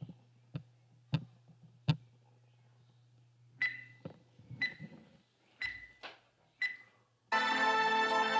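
Countdown beeps: four short high beeps about a second apart, each with a knock, after a few sharp clicks at the start. Loud intro music starts near the end.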